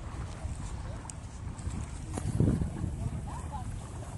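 Wind buffeting the microphone: a low rumble that swells about two and a half seconds in, with faint voices in the background.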